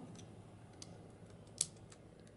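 Faint small clicks of a microSD card being slid into the card slot of camera sunglasses, with one sharper click about a second and a half in as the card snaps into place.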